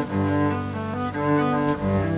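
A small string ensemble, cello and violin, playing a slow classical-style piece in long bowed notes that change every half second or so.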